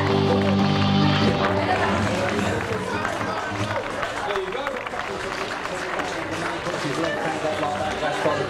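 A folk band of fiddles and acoustic guitar finishes a tune about a second in. After that, a crowd chatters.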